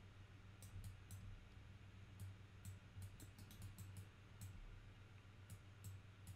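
Faint, irregular clicking of a computer mouse, about a dozen clicks, over a low steady hum.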